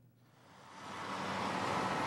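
Heavy construction machinery running: an articulated dump truck's diesel engine, fading in over the first second and then steady.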